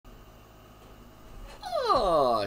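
Faint room tone, then about a second and a half in, a man's high-pitched vocal cry sliding steadily down in pitch as he bursts out laughing.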